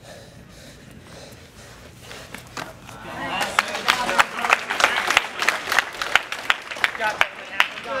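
Spectators clapping, with some calls, starting about three seconds in after a few seconds of low room murmur.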